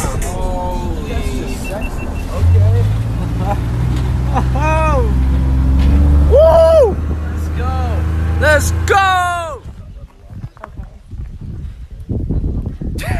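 People calling and whooping in rising-and-falling voices over a steady low rumble inside a car. The rumble comes in about two seconds in and drops away near the end, leaving it much quieter.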